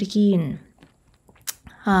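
A woman's voice speaking briefly, then a pause with a few faint clicks and one sharper click about one and a half seconds in, and her voice again at the end.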